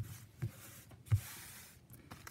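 Quiet handling noises of trading cards and booster packs on a playmat: a few soft taps, the sharpest just past a second in, followed by a brief light rustle.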